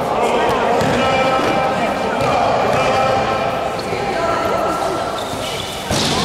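Basketball game sounds: many overlapping voices of players and spectators chattering and shouting, with a basketball bouncing on the hard court.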